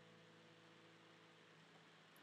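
Near silence: the final chord of an acoustic guitar dying away at the end of the song, leaving faint steady hiss.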